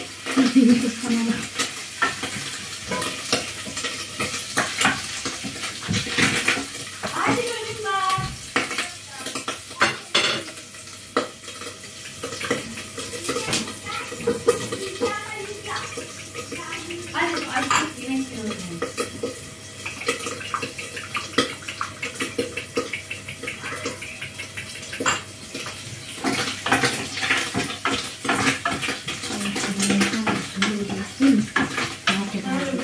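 A utensil repeatedly clacking and scraping against a frying pan on a gas stove as food is turned, over a low sizzle of frying.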